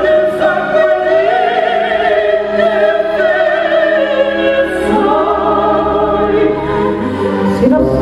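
Operatic duet: a soprano and a tenor singing long held notes with vibrato over an instrumental accompaniment.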